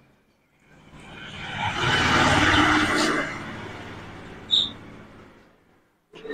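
A rushing engine-and-tyre noise that swells up, peaks and fades away over about five seconds, like a vehicle passing by. A short high chirp sounds near the end.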